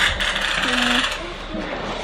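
Scraping and rattling of a Wonderfold folding stroller wagon's metal frame and rear-wheel clamp being handled during assembly, mostly in the first second, then quieter.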